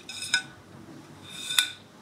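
Two light metallic clinks with a brief ringing tone, about a second apart, from the metal fuel-gauge sender tube of a VW T2 fuel tank being handled.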